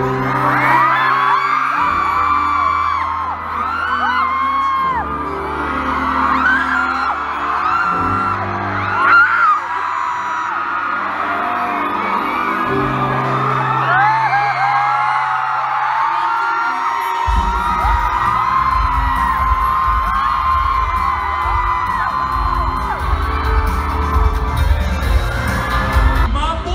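Audience of fans screaming and cheering, many high-pitched shrieks overlapping, over music with held chords; a steady beat comes in about two-thirds of the way through.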